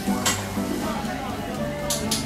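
Scallop cooking in its shell with a pat of butter on a grill, its juices sizzling and bubbling, with steady background music playing over it.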